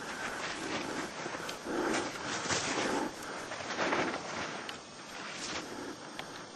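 Skis swishing through deep powder snow, the hiss swelling and fading with each turn.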